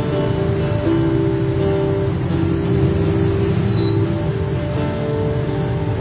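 Acoustic guitar played through a portable PA speaker: steady held chords that change every second or so, with no singing.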